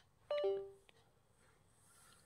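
Windows laptop's two-note USB device chime, a higher note falling to a lower one, as the Ethernet adapter's USB plug is handled in the port; falling is the order Windows uses for a device being disconnected. A small click follows just after.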